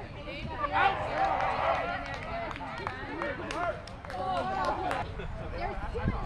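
Several people talking and calling out at once, indistinct and overlapping, busiest about a second in.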